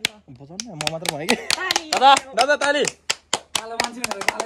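Excited voices, with hand clapping, a few sharp claps a second, coming in toward the end.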